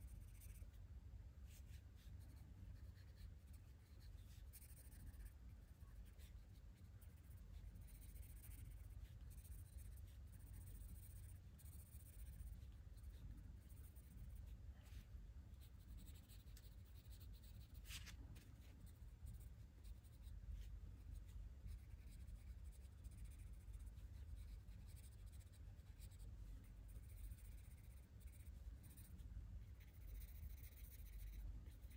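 Coloured pencil scratching faintly on paper as a page is shaded in small strokes, over a low steady hum.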